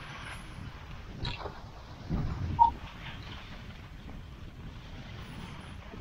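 Wind rumbling on the microphone of a handheld camera, with a stronger gust or handling bump about two seconds in and a short sharp knock just after it.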